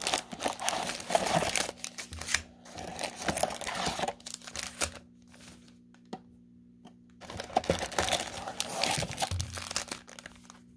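Foil trading-card packs crinkling and rustling against a cardboard box as they are pulled out and stacked, in two spells with a quieter pause in the middle.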